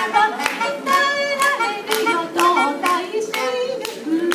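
Live song: a woman singing over a melodica (keyboard harmonica) blown through a long mouthpiece tube, with hand clapping in time, about two claps a second.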